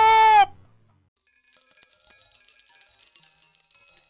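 The theme music's last held note cuts off about half a second in. After a short silence, a high, shimmering chime sound effect starts and rings on, slowly fading.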